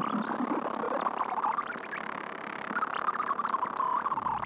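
Dark lo-fi glitch electronic music played live on hardware: a Pittsburgh Modular Lifeforms SV-1b synthesizer and a Roland SP-404A sampler. A synth tone sweeps up and down in pitch over glitchy crackles. It dips in the middle and swells again near the end.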